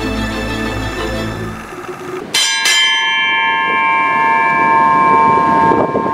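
Brass ship's bell struck twice in quick succession, then ringing on for several seconds. It signals the crew's working hours. Background music stops just before the strikes.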